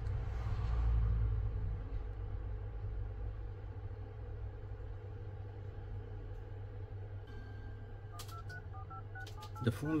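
Samsung Galaxy S24 Ultra dialer keypad beeping as digits are tapped in quickly, about a dozen short two-tone beeps starting about eight seconds in. This is a check of the newly replaced screen's touch response. Before the beeps there is only a low steady background rumble.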